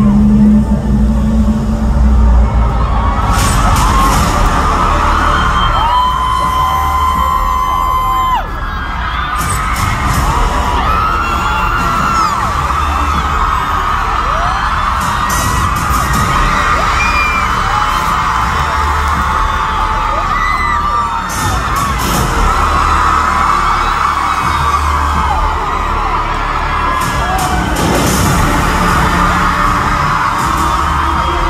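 Loud concert music with heavy bass over the arena PA, overloading the phone's microphone, under a large crowd of fans screaming and cheering continuously.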